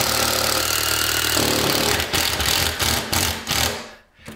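Cordless impact driver driving a wood screw through a pine door frame into the wall. It runs steadily, then turns choppy and hammering about a second and a half in as the screw tightens, and stops just before the end.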